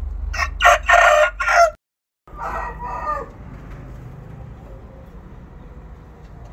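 A Bangkok game rooster (ayam Bangkok) crows loudly for about a second and a half. After a short break in the sound, a shorter call follows that falls in pitch at its end.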